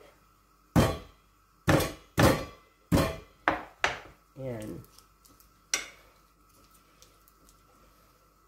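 Kitchen knife chopping garlic on a plastic cutting board: a series of sharp knocks, six in the first four seconds and one more near six seconds.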